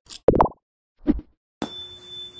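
Sound effects of an animated logo sting: a few quick cartoon pops, then a bright chime-like tone that strikes near the end and rings on steadily.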